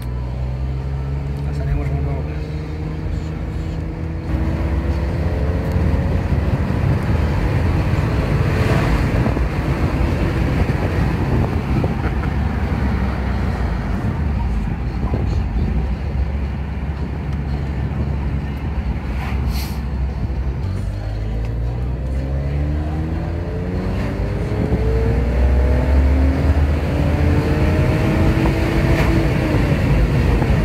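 BMW E46 328i's 2.8-litre straight-six heard from inside the cabin while driving, over road noise. The revs rise over the first few seconds, hold fairly steady, then climb in pitch again for about eight seconds from around twenty seconds in as the car accelerates.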